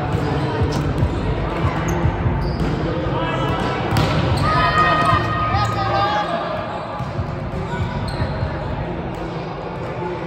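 Volleyball rally on an indoor court: the ball being hit and players' shoes on the hard floor, with voices echoing around the large hall.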